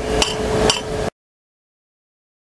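Pieces of freshly plasma-cut steel plate clinking and knocking against the steel slats of the cutting table as they are lifted off, over a steady hum. The sound stops abruptly about a second in.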